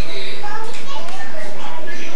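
Children's voices, talking and calling out while playing.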